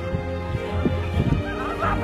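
Background music, with people whooping and shouting as they sprint off in a race; the cries come in two clusters, about a second in and near the end.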